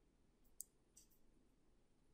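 Near silence with a few faint clicks of computer keyboard keys, about half a second to just past one second in.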